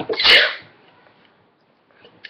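A short, loud, breathy burst of voice, like a huff or snort, lasting about half a second.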